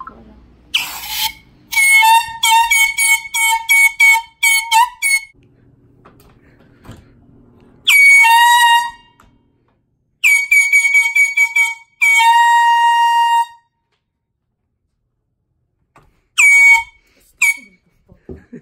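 High-pitched horn-like tones: a quick run of about a dozen short notes, then three longer held notes, then two short ones near the end, with quiet gaps between.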